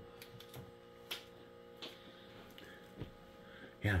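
Faint, scattered clicks and taps of handling as a knife is put away and a cigar is taken up, the sharpest tap about a second in, over a faint steady hum.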